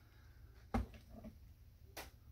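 Faint handling noise of a handheld camera and a paper model: a soft low thump about three-quarters of a second in and a short sharp click near the end, over a faint low steady hum.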